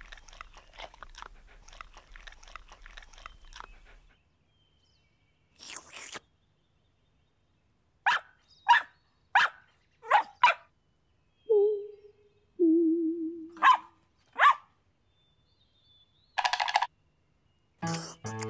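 A small dog crunching and nibbling at a ball of ice cream for about four seconds. After a pause comes a run of short, sharp dog sounds, with two brief wavering whines in the middle of them.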